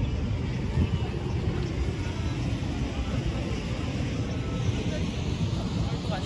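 Steady low rumble of wind on the microphone, with indistinct voices of people nearby.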